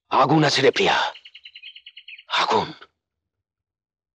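Mostly a man's voice speaking. Between two phrases there is about a second of rapid, evenly spaced high chirps, like a small bird's trill. The sound cuts to dead silence about three seconds in.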